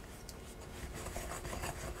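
Wooden spoon stirring stiff, shaggy bread dough in a glass mixing bowl: quiet, irregular scraping and rubbing strokes as the dough firms up to the point of being too dry to mix in the bowl.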